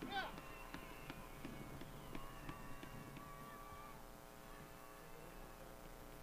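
Faint, distant voices of players and spectators on a soccer field just after a goal, over a steady low electrical hum.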